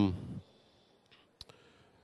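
A man's voice trails off, then, after a short pause, a single sharp click sounds a little past halfway, with a fainter tick just after it.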